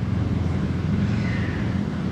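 Steady low background rumble in a pause between speech, with no clear events.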